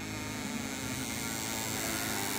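1957 Ford Fairlane convertible's power top mechanism, its electric-hydraulic pump motor running with a steady drone while the top folds down.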